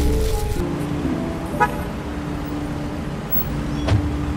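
Music with held notes over street traffic noise, with a short car-horn toot about one and a half seconds in and a sharp knock just before the end.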